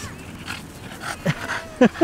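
French bulldog panting in short noisy breaths close by, with a couple of brief louder sounds near the end.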